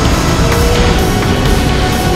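Street stock dirt-track race car's V8 engine running hard at racing speed, loud and heard from inside the cockpit.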